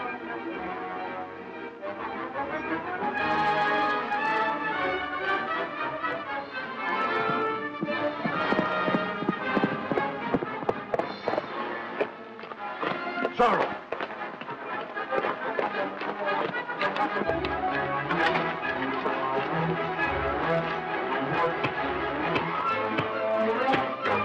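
Dramatic orchestral film score, with a run of sharp blows and scuffling from a staged fistfight over it in the second half.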